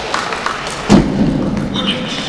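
Loaded barbell dropped from overhead onto the lifting platform after a completed snatch: one heavy thud about a second in, with a short low rumble after it.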